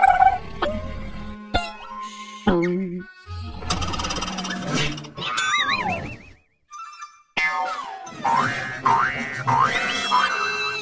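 Cartoon soundtrack: orchestral underscore with slide-whistle and boing-style comic sound effects. A wobbling glide falls away about five and a half seconds in, there is a short near-silent pause, then a run of quick rising slides.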